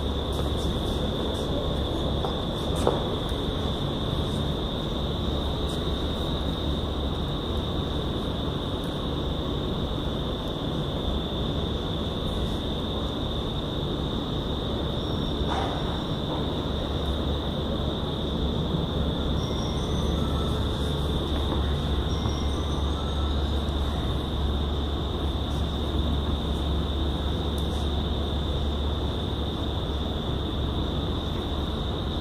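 Vertical wind tunnel running at flying speed: a steady loud rush of air with a steady high whine over it.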